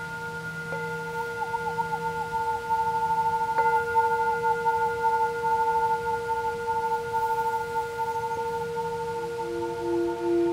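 Hand-held metal singing bowl struck with a mallet and ringing with several overtones; it is struck again about three and a half seconds in. Held close to the open mouth, which shapes the sound, its tone wavers and then pulses. Near the end a second, lower bowl tone comes in, also pulsing.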